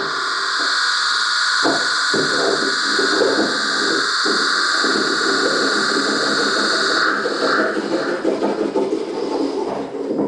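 Live electronic noise music: two steady, high hissing drones over a jittery, crackling lower layer. The hissing drones cut off about seven seconds in, leaving the rougher lower noise.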